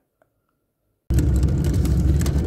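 Near silence, then about a second in a car's steady low rumble, heard from inside the cabin, starts abruptly.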